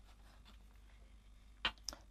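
Quiet room tone, then two brief soft rustles near the end as a card is handled and set down on a cutting mat.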